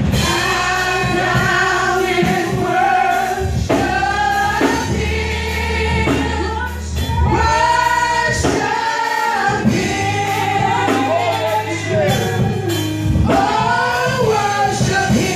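Women singing a gospel worship song together into microphones, over sustained low accompanying notes.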